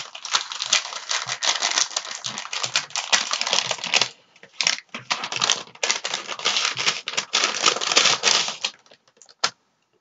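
Paper wrapping rustling and crackling as a taped-shut paper package is unwrapped by hand, in two long stretches with a short pause about four seconds in and a last click near the end.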